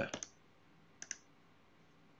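A computer mouse button double-clicked: two quick, sharp clicks about a second in.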